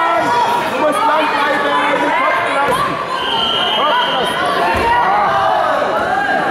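Several voices shouting and talking over one another in a large, echoing sports hall, as coaches and spectators call out during a wrestling bout. About three seconds in, a steady high tone sounds for just over a second.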